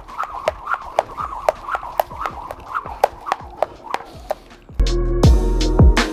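Speed jump rope turning fast, its cable whooshing and slapping a rubber skipping mat with each turn, about four times a second. About five seconds in, loud background music with a beat starts over it.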